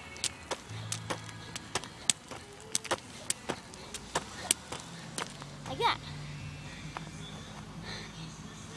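Jump rope slapping the ground on each turn while she hops, a sharp slap about four times a second, stopping about five seconds in. A low steady hum comes in near the end.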